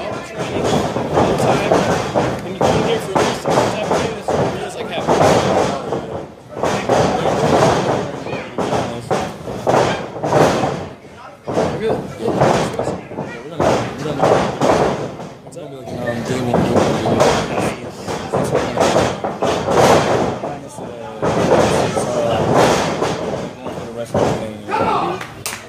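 Wrestlers' bodies thudding and slamming onto a wrestling ring mat, under steady talking and calling out from people around the ring.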